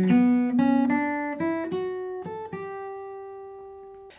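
Furch Yellow Master's Choice steel-string acoustic guitar fingerpicked as an arpeggio of single notes: a quick run of about nine notes, then the last note left to ring and slowly fade.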